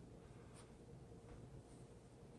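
Faint rubbing and scuffing of a hand working a dry spice rub into raw beef on a paper-covered board, with two soft scrapes about half a second and a second and a quarter in.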